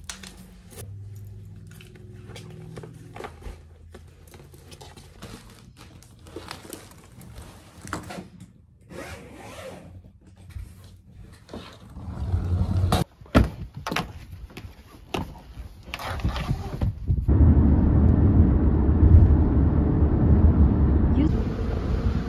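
Packing sounds: scattered clicks, scrapes and rustles of headphones, a padded bag and a soft suitcase being handled and closed, with a sharp knock a little after the middle. For the last five seconds a loud, steady low rumble from outdoors takes over.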